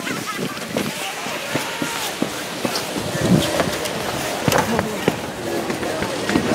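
A steady outdoor hiss with scattered light knocks and faint voices in the background.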